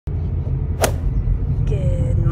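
Steady low rumble of road and engine noise inside a moving car's cabin, with one sharp swish a little under a second in.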